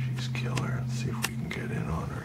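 Quiet, whispery muttering from a man, with a few sharp clicks, over a steady low electrical hum.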